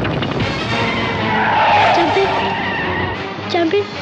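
A car's tyres skid and screech as it swerves hard, over a loud film soundtrack. The skid swells about a second in and lasts about a second and a half.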